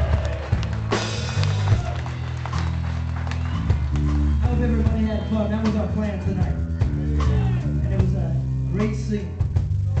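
Live rock band playing: drum kit keeping a steady beat over a strong bass line, with electric guitar, and a cymbal crash about a second in.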